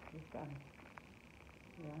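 Faint crinkling and ticking of a clear plastic wrapping bag being handled, between a short murmured vocal sound about half a second in and a spoken "yeah" near the end.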